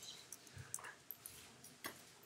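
Faint classroom room noise with a few light clicks and brief, scattered faint sounds.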